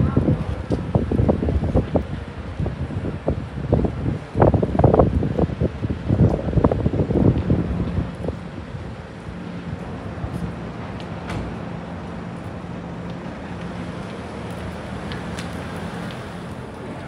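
Wind buffeting the microphone in heavy, irregular gusts for about the first half. It then eases into a steady city street background with a faint low hum.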